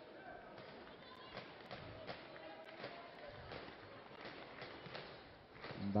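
Faint indoor volleyball arena ambience: a murmuring crowd and distant voices, with a few soft thuds scattered through it.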